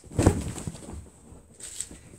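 A thump about a quarter second in, followed by rustling and scuffing as people move and scuffle close to the microphone.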